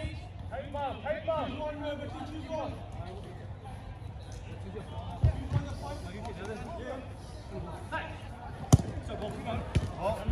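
Distant players' voices calling on a 5-a-side football pitch, with the thuds of a football being kicked; one sharp ball strike near the end.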